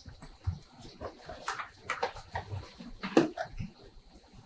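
A quiet pause in a lecture hall, with faint, scattered brief sounds from the room and audience.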